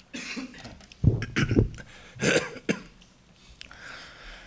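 A man coughing and clearing his throat into a podium microphone: a short series of coughs, loudest in a quick cluster about a second in and again a little past the middle.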